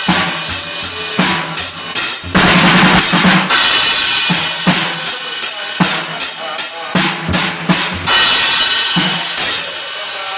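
Acoustic drum kit played in a rock groove: bass drum, snare and tom hits, with loud cymbal crashes about two and a half seconds in and again near the end, along with a rock song recording.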